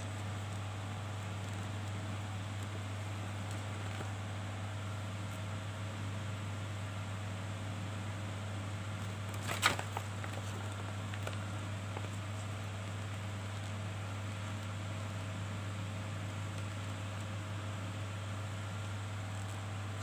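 A steady low hum runs on unchanged, with one brief rustle of the folded paper instruction leaflet being handled about ten seconds in.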